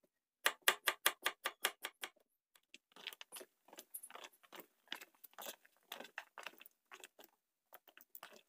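A kitchen knife cutting through papaya about four times a second for two seconds, then hands squeezing and working the cut papaya pieces in a plastic tub: a run of small, irregular crackles.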